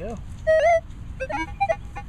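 Metal detector tones while pinpointing a target in a dug hole: a loud held beep about half a second in, then several short beeps at different pitches.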